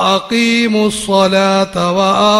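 A man chanting a melodic religious recitation, holding each syllable on a long steady note and stepping between pitches, with short breaks between phrases.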